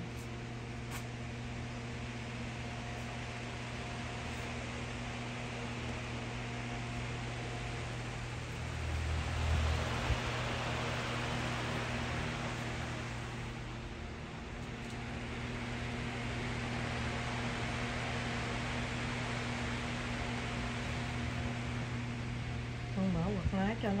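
Electric floor fans running: a steady rush of blown air over a low motor hum, growing louder about a third of the way in and again in the second half. A brief low knock about ten seconds in.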